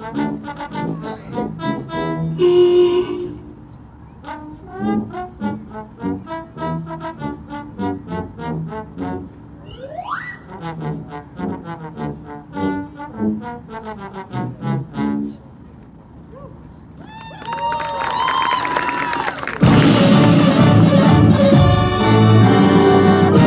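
High school marching band playing a field show: a light passage of short, detached notes with a quick upward glide about halfway through, then a build and the full band coming in loud near the end.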